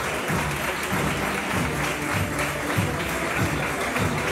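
A banda de música, brass and drums, playing a Holy Week processional march behind a paso, with a crowd applauding over the music.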